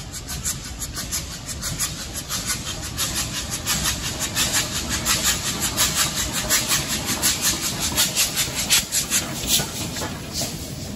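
Steam locomotive running fast under power, its exhaust beating in a quick, even rhythm of about five chuffs a second that grows louder as it approaches and is loudest near the end as it draws level.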